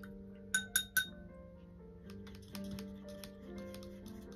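Paintbrush being rinsed in a glass jar of water, its handle tapping the glass three times in quick succession with short ringing clinks about half a second in.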